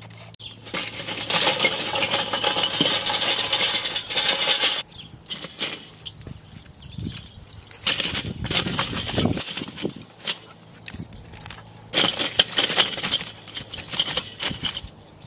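Lumpwood charcoal and wooden smoking chunks clattering and scraping against each other and the steel bowl of a kettle barbecue as they are handled, in three bursts: a long one in the first few seconds, a shorter one about eight seconds in, and another near the end.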